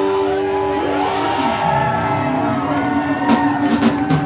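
Live rock band music: held guitar notes ringing steadily, with drum hits coming in near the end.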